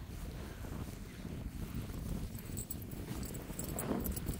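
Wind rumbling on a phone microphone, with irregular footsteps on dry, matted grass.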